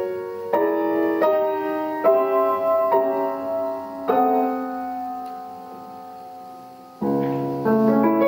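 Grand piano played live in a slow, sustained passage: chords struck about once a second, then one chord left ringing and fading for about three seconds before a deeper chord with low bass is struck near the end.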